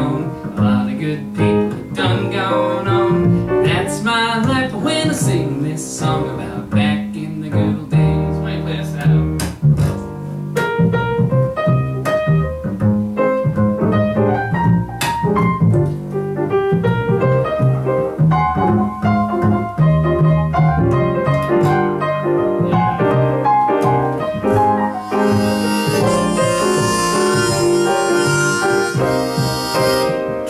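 Live grand piano and upright double bass playing an instrumental passage of a song. A brighter, higher part joins about five seconds before the end.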